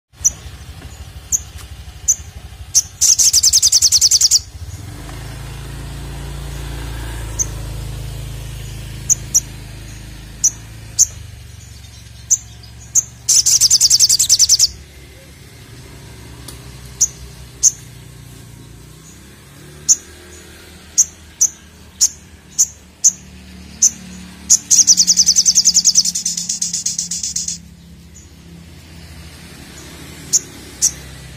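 Male olive-backed sunbird (sogon) calling: sharp, very high single chirps at irregular intervals, broken three times by a fast, loud trill lasting one to three seconds.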